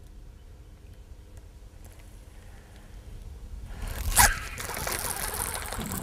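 Quiet at first, then a little under four seconds in a sharp splash and continuing splashing at the water's surface: a small bass hooked on a jig thrashing as it is reeled toward the boat.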